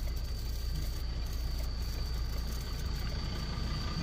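Ford Ranger Wildtrak's 3.2-litre five-cylinder diesel idling: a steady low hum with a thin, steady high whine over it.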